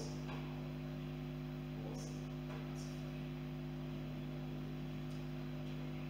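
Steady electrical mains hum, with a few faint, brief hissy sounds about two seconds in and again shortly after.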